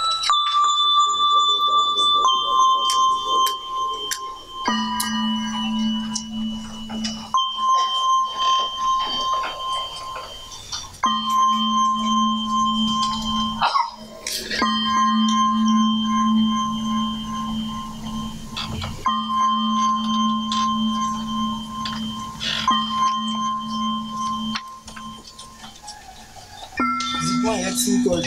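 Slow instrumental background music: long held single notes, each lasting a few seconds and stepping a little up or down, over a low steady drone that drops in and out. A few short knocks fall between the notes.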